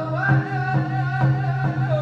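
First Nations drum song: one or more voices singing a wavering melody over a drum struck steadily about twice a second.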